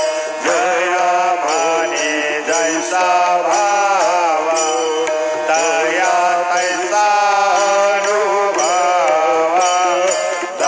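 Devotional aarti hymn sung to a steady chant melody, with a bright metallic jingle striking about twice a second to keep the beat.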